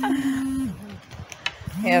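A woman's voice holding a long, level vowel, a drawn-out exclamation, for under a second. After a short lull she starts another drawn-out 'é' near the end.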